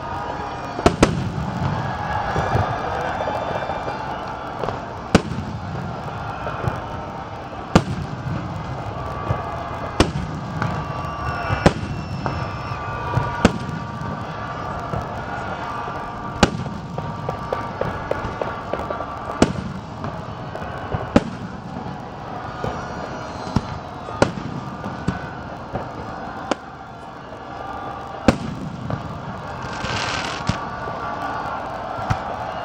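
Aerial firework shells bursting: about a dozen sharp bangs a few seconds apart over a continuous background din.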